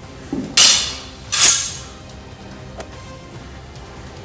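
Two loud clashes of stage-combat weapons a bit under a second apart, each ringing out briefly, over background music.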